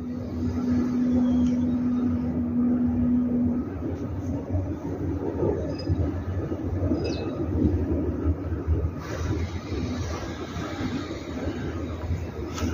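Wind buffeting the camera microphone: a continuous, unsteady low rumble, with a steady hum in the first three seconds or so that then stops.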